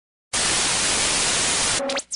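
Loud, even TV-static hiss, the sound effect of a logo intro, starting about a third of a second in. Near the end it breaks off into a few short electronic tones with a quick rising sweep.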